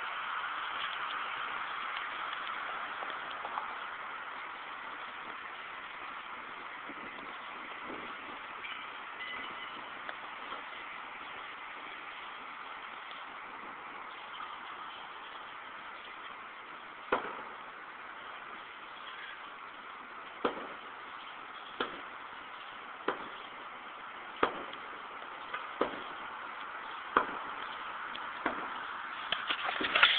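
Street traffic below, a steady hiss of passing cars. In the second half, a series of sharp knocks about one every second and a half.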